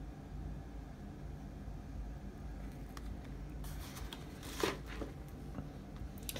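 Faint steady room hum, with a few soft rustles and small plastic clicks in the second half as a trading card in a hard plastic holder is handled.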